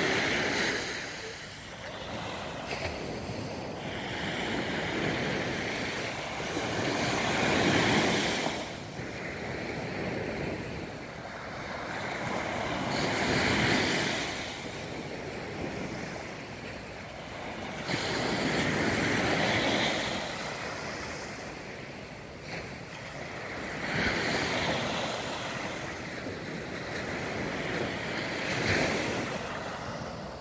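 Small sea waves breaking on a sandy beach, the surf swelling and washing back in slow surges about every five seconds.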